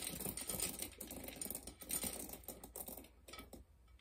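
Dry pinto beans poured by hand into a half-gallon glass canning jar: a run of small clicks and rattles as the beans hit the glass and each other, thinning out toward the end.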